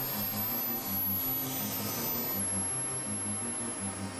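Small model-jet turbine engine whining at a very high pitch, dropping a step lower about halfway through, over music with a repeating bass pattern.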